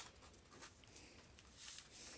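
Near silence, with faint rustling and light scraping of paper as it is slid into place and creased flat by hand, a soft hiss near the end.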